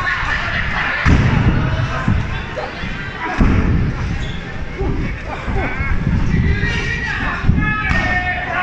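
Several heavy thuds of wrestlers hitting the ring canvas and each other in a lucha libre match, the strongest about a second in and again around three and a half seconds, with a crowd shouting throughout.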